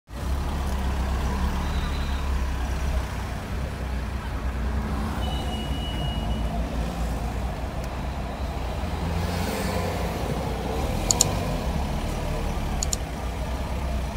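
Steady low rumble of a car's engine and road noise heard from inside the cabin as it creeps through slow traffic, with a few faint sharp clicks near the end.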